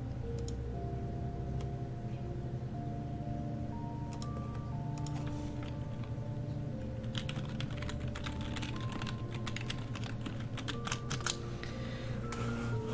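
Clicking on a computer keyboard, a few scattered clicks at first and a dense run of them from about seven seconds in, over background electronic music with held notes and a steady bass.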